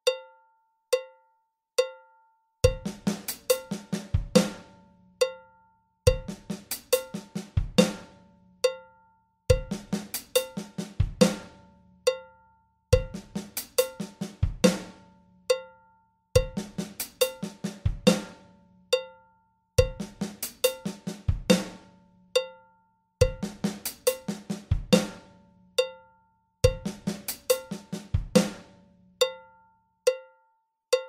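Electronic drum kit playing a repeating one-bar lick at 70 bpm: bass drum, hi-hat and snare doubles with soft ghost notes. The lick plays about eight times, each bar ending with a short rest. It runs over a cowbell-like metronome click that counts in alone for three beats before the drums start.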